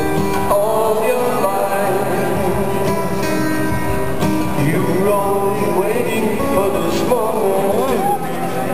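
Solo acoustic guitar picked live in a large arena, heard at a distance from the audience with the hall's echo.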